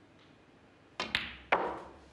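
Snooker cue tip striking the cue ball and balls clicking against each other: a quick pair of sharp clicks about a second in, then a louder click about half a second later, each ringing briefly.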